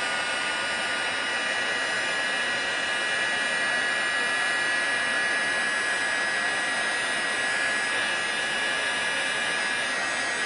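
Embossing heat tool running steadily, blowing hot air with a fan's rush and a steady high whine, melting gold embossing powder on cardstock.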